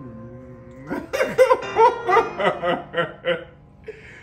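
A man laughing, a run of about eight short 'ha' bursts starting about a second in, over the fading tail of a sustained keyboard note from the beat software.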